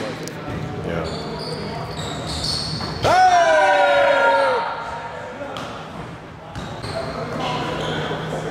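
Pickup basketball on a hardwood gym court: a ball bouncing and short sneaker squeaks. About three seconds in, a player dunks, and a loud, drawn-out shout, falling in pitch, goes up in reaction.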